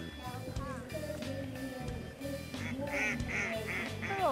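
A duck on the water quacking, about four short quacks in quick succession near the end, over steady background music.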